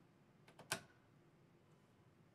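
A battery pressed into a soap dispenser's plastic battery holder: a faint click about half a second in, then one sharp click as it seats. Otherwise near silence.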